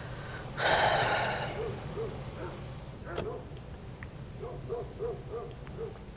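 A loud breath out about half a second in, then an owl hooting a run of short, quick hoots that come faster near the end.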